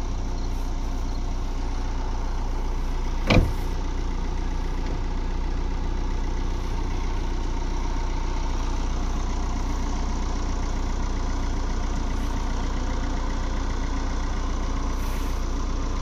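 Car engine idling steadily, a constant low hum, with one sharp click about three and a half seconds in.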